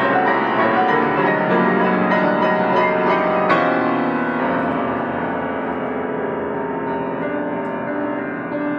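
Feurich grand piano played four hands: dense chords, with a loud chord struck about three and a half seconds in that is left to ring and slowly die away.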